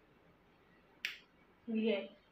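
A single short, sharp snap about a second in as the kurti's stitched cloth is pulled apart with both hands, with a quiet room behind it.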